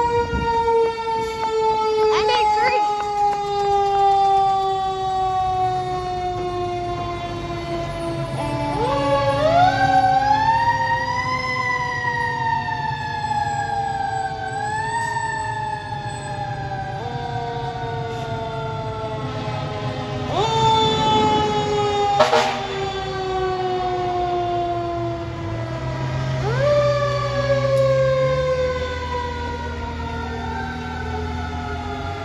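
Fire apparatus sirens wailing. Each siren rises quickly, then winds down slowly over several seconds, and this repeats several times, with more than one siren sounding at once. A low truck-engine rumble runs underneath in stretches, and a sharp click comes about two-thirds of the way through.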